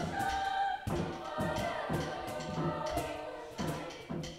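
Mixed youth choir singing in parts, with a hand drum keeping a steady beat underneath.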